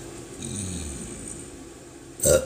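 A woman swallowing air to bring up a burp, making a short, low throat sound that falls in pitch about half a second in. The burp does not come.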